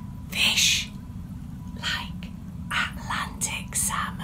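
A woman whispering in short, breathy bursts, with a steady low hum underneath.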